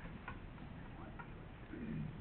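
Quiet room tone in a large meeting room, with a few faint, irregular clicks.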